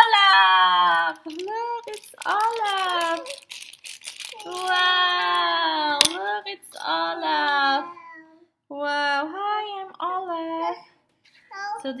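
A toddler's high voice singing and babbling in short phrases that slide up and down in pitch. Between phrases a clear plastic wrapper crinkles, with one sharp click about halfway through.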